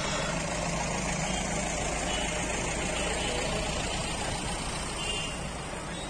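Steady background noise of a busy town street, with motor traffic running.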